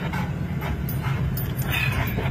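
A dog whimpering and panting inside a moving car, over the car's steady low hum.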